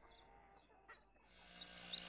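Near silence, then about a second and a half in a faint outdoor ambience fades in, with a few short bird chirps near the end.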